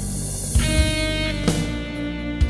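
A Korg Pa-series arranger keyboard playing its auto-accompaniment style, a worship rhythm: sustained chords with guitar over a drum pattern, with low drum hits about half a second and a second and a half in.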